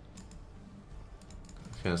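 Faint, scattered clicks, with a man starting to speak near the end.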